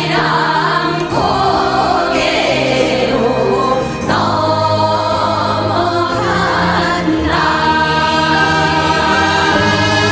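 Background music: a choir singing slow, held chords.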